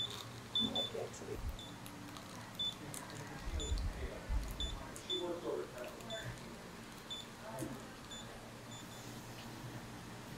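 Short high-pitched electronic beeps, irregularly spaced, from a RODO Smile key induction handpiece held against a Smileloc implant abutment, heating it to release the implant-retained denture.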